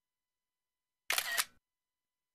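Dead silence broken about a second in by one short, sharp, clicking burst lasting about half a second, with a stronger click at its start and another near its end.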